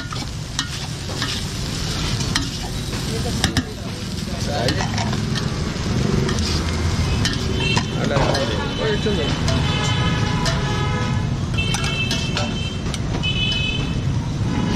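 A metal spoon stirring and scraping fried rice in a steel pot, with scattered sharp clinks against the pot, over a steady street rumble. In the second half a high, steady tone sounds on and off several times.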